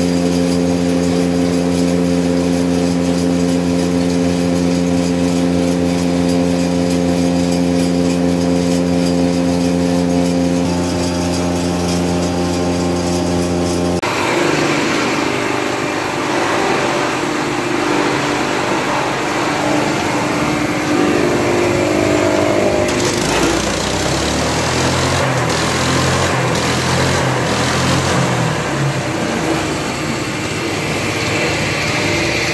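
Forage chopper running at a steady pitch while chopping grass for silage. About halfway through, the sound changes abruptly to a silage bagging machine running, noisier and less even, with some faint clicks later on.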